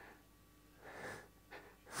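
Near-quiet hall with one soft, breathy exhalation about a second in.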